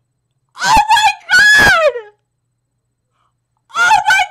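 A woman's loud, wordless cries of shock: two drawn-out cries close together, the second sliding down in pitch. Another vocal outburst starts near the end.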